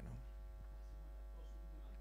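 Steady electrical mains hum, a low buzz with a ladder of even overtones, left exposed in a pause between words.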